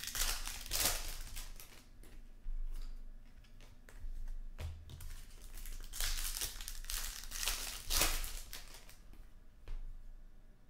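Foil trading-card pack wrapper crinkling and tearing as it is opened by hand, in two spells of rustling: one in the first second and another from about six to eight seconds in.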